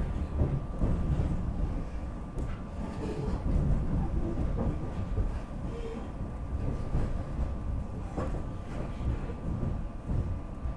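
SEPTA Regional Rail electric commuter train running underground, heard from inside the passenger car: a steady low rumble of wheels on track with a faint steady hum. A few sharp clicks come through about two seconds in and again near the end.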